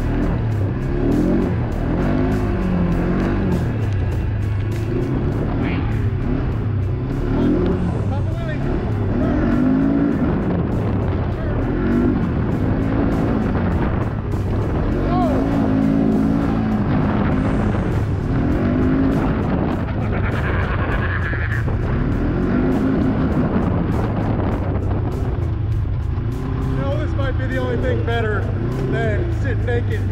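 ATV engine running hard, its pitch rising and falling again and again as the throttle is worked over a rough dirt trail.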